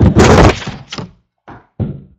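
Handling noise close to a computer's microphone: a loud thunk followed by several shorter knocks. The sound cuts off abruptly near the end.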